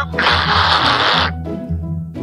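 Cartoon nose blow into a handkerchief: one noisy blast about a second long, over steady background music.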